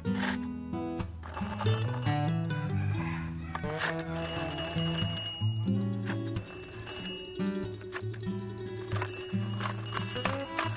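Background music: a plucked guitar tune with a steady run of changing notes.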